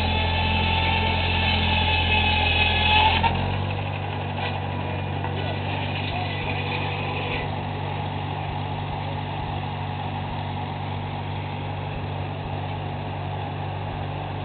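McCormick W-6's four-cylinder engine running steadily, driving a belt-powered circular sawmill. For the first three seconds a higher whine and a deep rumble are louder; they rise briefly and then drop away suddenly about three seconds in, leaving the steady engine running.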